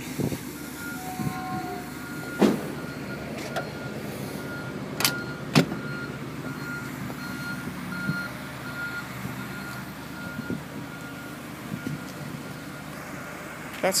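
Air-cooled flat-six engine of a Porsche 911 idling steadily, with a regular electronic beeping about twice a second that stops about eleven seconds in. A few sharp knocks, the loudest about five and a half seconds in.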